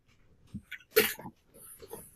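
A man's single short, sharp burst of voice and breath about a second in, between quiet pauses, with a few faint clicks and breath sounds around it.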